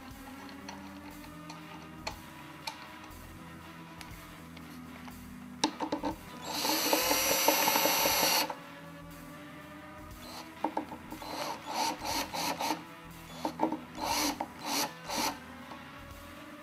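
Screwdriver turning the tailpiece stud screws down into their bushings, with a loud burst of noise lasting about two seconds partway through and a run of short scraping bursts near the end, over steady background music.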